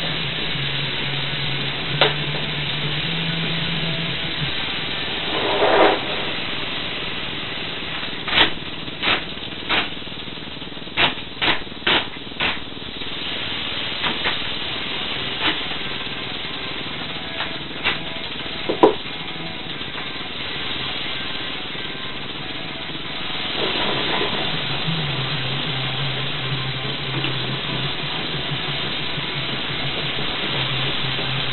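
Western diamondback rattlesnake rattling steadily inside a plastic transport box, the sign of an agitated, defensive snake; the rattle gets louder a little past two-thirds of the way through. Several sharp clicks and knocks from handling the box and its lid come in the middle.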